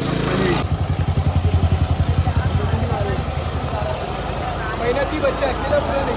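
Small petrol portable generator running close by, its low rapid engine beat loudest for the first few seconds and then settling back to a steady hum.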